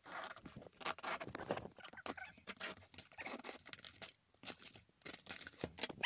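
A cardboard parcel being cut and torn open with pliers: a run of irregular snips, cracks and tearing of tape and cardboard.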